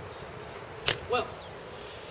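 A single short, sharp click a little under a second in, over steady outdoor background hiss, followed by a man briefly speaking.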